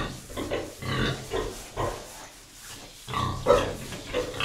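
Domestic pigs grunting in a series of short grunts, with a lull in the middle and a louder run near the end.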